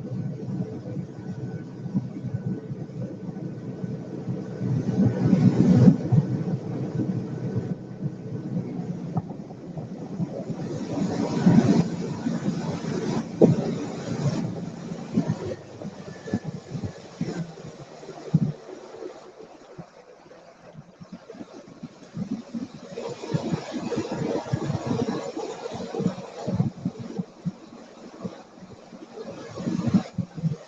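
Boat motor running steadily as the boat travels, its hum fading out about halfway through, under gusty wind noise with scattered knocks and louder surges.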